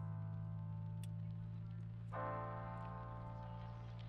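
Background music: sustained chords over a steady low drone, with a new chord coming in about two seconds in.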